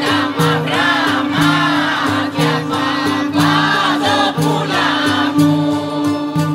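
Epirote polyphonic folk singing by a mixed choir: a winding sung melody over a steady held drone, with a low accompaniment repeating about once a second.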